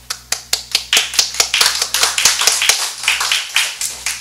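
A small audience applauding, with sharp claps close to the microphone; the applause thins out and fades near the end.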